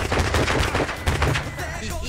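A rapid burst of gunfire, many shots in quick succession, starting suddenly and lasting about a second and a half.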